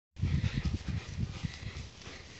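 A shaggy long-haired dog panting close to the microphone, in quick, uneven breaths that fade out towards the end: the dog is out of breath from running.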